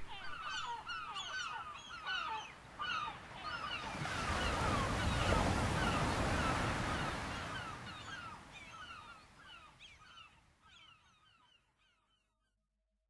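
A flock of birds calling, many short falling calls overlapping, like geese honking. A rush of noise swells and fades in the middle, and everything fades out near the end.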